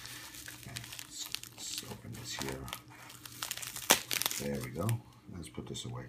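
Plastic bubble wrap crinkling and tearing as it is cut open with a Gerber knife, with a sharp snap about four seconds in.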